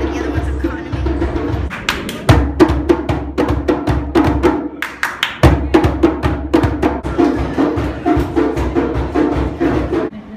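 Djembe-style hand drums played in a fast rhythm. Sharp slaps start about two seconds in and stand out over a steady pitched backing, and it all stops at the end.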